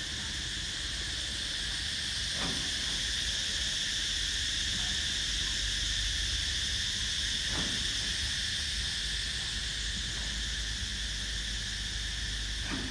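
A steady, high-pitched chorus of insects droning without a break.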